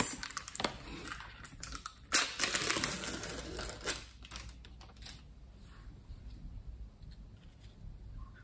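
Clear plastic hummus tub being opened by hand: light clicks of the plastic lid, then a louder crinkling, tearing peel of the clear plastic seal about two seconds in that lasts about two seconds, then a few faint clicks of the plastic being handled.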